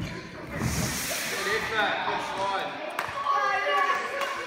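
Children shouting and cheering in an echoing gym hall, with a few thuds of running feet on the wooden floor.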